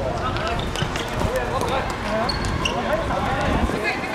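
Footballers calling out to each other on the pitch, several voices overlapping, with thuds of the ball being kicked.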